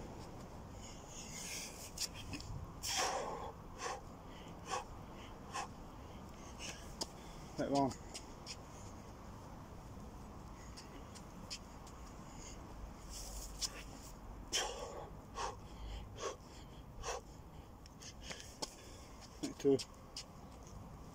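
A man breathing hard from the exertion of nonstop burpees with press-ups: a run of short, sharp exhalations, and two brief voiced grunts, one midway and one near the end.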